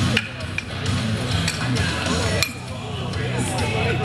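Weight plates on a loaded deadlift barbell clinking a few times as they are changed by hand, over background music and crowd voices.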